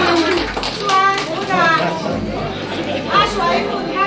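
Chatter: several people talking over one another, some voices high-pitched.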